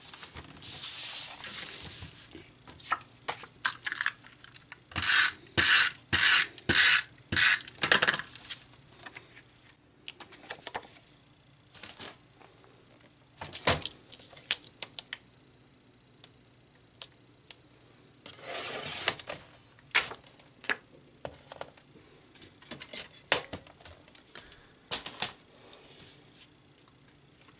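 Hands handling card stock and paper-crafting tools on a craft table: paper sliding and rustling, a run of six or seven quick scrapes in the first third, and scattered taps and clicks as a paper trimmer is used, with another scrape of about a second later on.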